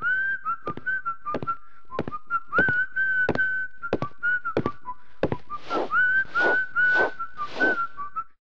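A person whistling a simple tune, each note sliding up into pitch, over a string of sharp taps. Near the end come four swishes of a broom sweeping a hard floor, about a stroke every half second.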